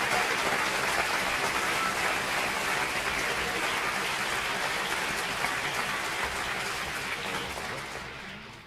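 Concert audience applauding steadily, the applause starting to fade out near the end.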